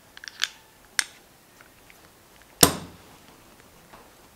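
Metal parts of a Motion Pro 39 mm fork seal driver (split collar and sleeve) clicking as they are handled. There are a few light clicks, a sharper click about a second in, and one louder knock with a short ring-out about two and a half seconds in.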